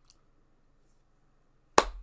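Near silence, then a single sharp smack with a low thump near the end.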